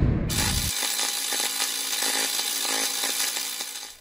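Logo intro sound effect: a deep rumbling hit dies away in the first second under a steady, buzzing, machine-like noise of many tones, which gradually fades out near the end.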